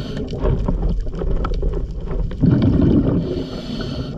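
Scuba diver breathing through a regulator underwater: a burst of exhaled bubbles rumbles out about halfway through, followed near the end by the hiss of an inhale, with scattered faint clicks throughout.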